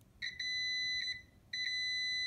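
Continuity tester beeping as its probe touches a repaired keyboard-membrane trace: two steady high beeps, the first about a second long and the second starting about halfway through. The beep shows the re-glued trace conducts.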